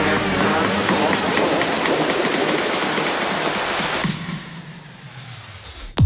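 A loud rushing noise across all pitches that dies away from about four seconds in.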